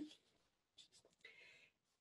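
Near silence: a pause in speech, with only faint, brief sounds about a second in.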